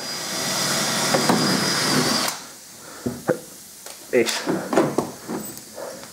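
A small electric motor runs steadily with a high whine, then stops about two seconds in. After it come a few light knocks and clicks from handling the plastic air-diverter and skirt parts.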